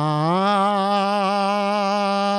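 A man singing a shabad, a devotional hymn, into a microphone, holding one long note that rises slightly near the start and then holds with a slight waver.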